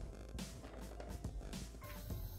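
Quiet background music.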